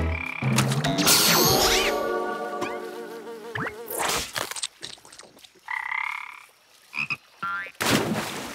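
Cartoon sound effects: a frog croaking in short calls, with a shimmering magical sparkle about a second in as the frog is transformed. A splash into the water comes at the end.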